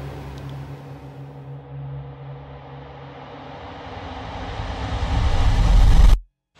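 Background music in an edited outro: a steady low drone whose treble fades away so it sounds muffled, then a deep rumbling swell that builds loudly over the last couple of seconds and cuts off suddenly.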